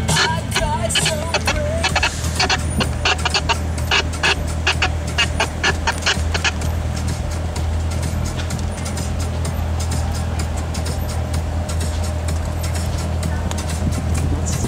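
Corvette Z06 V8 running at crawling speed, a steady low drone heard from inside the cabin. Music with a clicking beat plays over it for the first half, then mostly stops.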